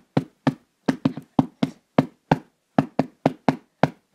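A quick run of short, sharp taps, about fifteen in four seconds at uneven spacing.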